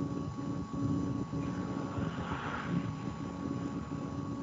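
Steady low rumble with a constant hum, background noise from an open microphone on a video call; a brief hiss swells about two seconds in.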